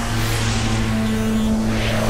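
A whooshing, swelling sound effect over a steady low drone from the background score.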